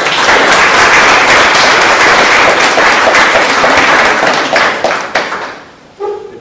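Audience applauding: dense, loud clapping that thins out to a few last separate claps and dies away near the end.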